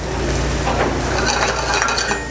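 Chopped leeks sizzling in hot oil in a stainless frying pan, a steady hiss with a few light clicks.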